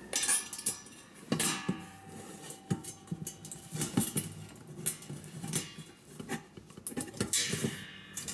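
Stainless steel stove parts and a steel spring clinking and scraping as the spring is stretched and hooked into a hole in the stove body, with irregular light taps of metal on metal. One knock a little over a second in leaves a thin ring that holds for a couple of seconds.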